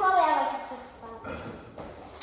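A child's voice calls out briefly with a falling pitch, then dies away to quiet room noise with a couple of faint knocks.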